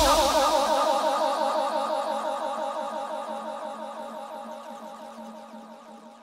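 Closing synth chord of a UK garage track, held with a wavering shimmer in its pitch after the drums have stopped, fading steadily out to the end of the track.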